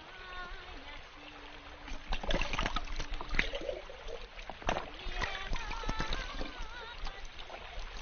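Water splashing and trickling in irregular bursts from about two seconds in. Over the start, and again in the middle, a wavering melody with strong vibrato is sung or played.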